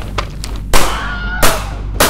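Two gunshots about two-thirds of a second apart, each a sharp crack with a short echoing tail, over a low steady musical drone.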